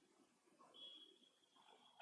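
Near silence: room tone, with a faint thin high squeak starting a little under a second in and holding to the end.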